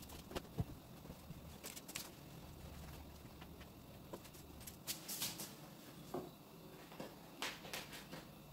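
Faint rustling of fabric being handled against a dress form, with a few soft clicks and taps in small clusters.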